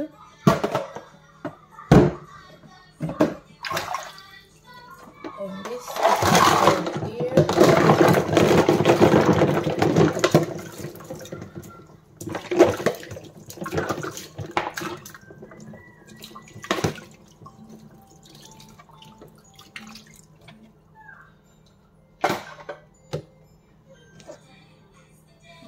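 Hard plastic knocks and clatter of a sterilizer and bottle parts being handled at a sink. For about four seconds in the middle, water pours and splashes loudly. Later come scattered knocks of plastic bottle rings and teats moved about in a basin of water.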